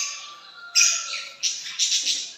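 Caged lovebirds giving about four short, shrill chirps and squawks.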